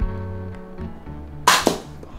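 Guitar music fades out. About one and a half seconds in comes a toy blaster shot: a sharp, loud crack followed at once by a second snap.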